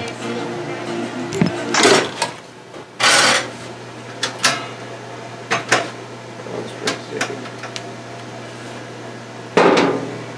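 Scattered knocks and clacks from work at a manual screen-printing press, over a steady low hum, with two short hissing bursts: one about three seconds in and one near the end.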